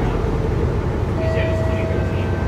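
Cabin drone of a Mercedes-Benz O530 Citaro city bus under way, heard from a passenger seat: the rear-mounted OM906hLA six-cylinder diesel and road noise as a steady low rumble. A thin steady whine comes in about a second in.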